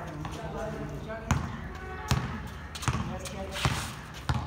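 A basketball bouncing on a hard outdoor court: four sharp bounces about three-quarters of a second apart, the first just over a second in.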